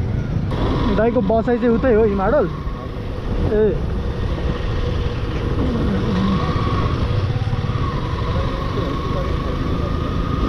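Motorcycle engine running with road and wind noise as the bike rides along, a steady low rumble throughout. A voice speaks briefly a second or so in.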